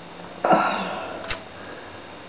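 Handling noise as a plastic potato-slicer frame is picked up and moved: a knock about half a second in that fades away, then a single sharp click a little after a second.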